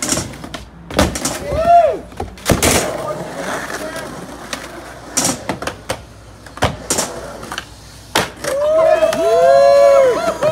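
Skateboard knocking and clacking on a backyard ramp, a few sharp knocks spread out, with people whooping and shouting without words; a long shout near the end.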